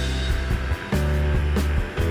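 Background music with a heavy bass line and a drum beat.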